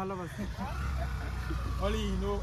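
Men's voices at the start and again near the end, over a steady low rumble that sets in about half a second in.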